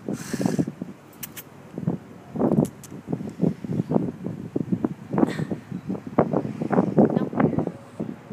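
A cat eating from a bowl, chewing mixed dry and wet food in quick, irregular crunches that come in bouts, with a short burst of hiss about half a second in.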